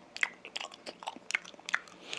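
Close-miked chewing of a mouthful of raw fish sashimi dipped in soy sauce and wasabi: a string of sharp, wet mouth clicks, several a second.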